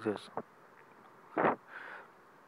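A man's voice trails off at the end of a word, then a pause. About one and a half seconds in comes a brief, sharp breath noise, followed by a softer inhale.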